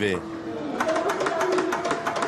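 Noisy psychiatric ward: indistinct voices and clatter, with one long, steady, high-pitched cry starting about a second in.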